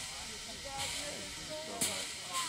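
Voices talking over a steady hiss, with no clear keyboard music.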